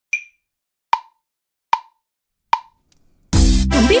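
A count-in of four short, sharp clicks evenly spaced just under a second apart, the first higher in pitch than the other three, like an accented metronome downbeat. Then backing music with a strong bass starts, and a voice comes in near the end.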